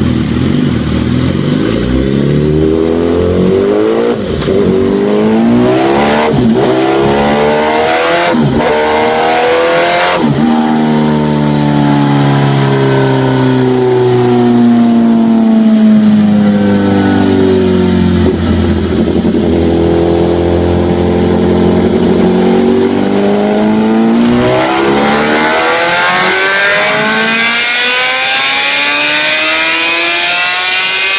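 BMW HP4 sport bike's inline-four engine running through an Austin Racing exhaust on a dynamometer. It revs up with a few short breaks over the first ten seconds, winds down over the next eight or so, then revs up again near the end.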